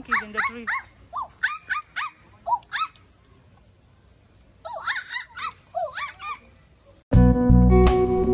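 Two runs of short, high-pitched animal calls, each a quick rise and fall in pitch, with a quiet pause between them; guitar music then starts suddenly shortly before the end.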